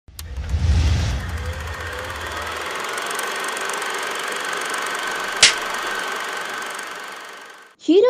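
Sound effect for an animated channel intro: a deep rumbling boom in the first couple of seconds, then a steady hiss with a faint held high tone, a single sharp click about five and a half seconds in, and a fade-out just before the end.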